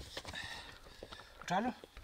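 Faint knocks and scrapes of rock and footsteps on stony ground as a man lifts and carries a large stone, with a brief voice sound about one and a half seconds in.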